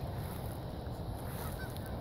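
Faint, steady low rumble of outdoor background noise, with no distinct sound standing out.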